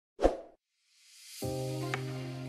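A single short pop sound effect, then background music fading in and running steadily from about a second and a half in.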